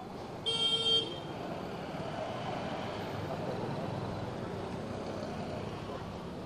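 A vehicle horn toots once, briefly, about half a second in, over a steady hum of street traffic.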